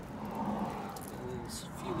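A man's voice in a short hesitating pause, starting to speak again near the end, over a steady low background hum.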